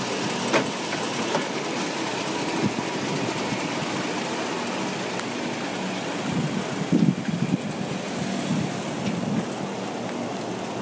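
A Toyota Tacoma pickup's engine running, left idling to warm up, under a steady haze of outdoor noise. There is a sharp knock about half a second in and a spell of louder, uneven rumbling around seven seconds in as the truck starts to move off.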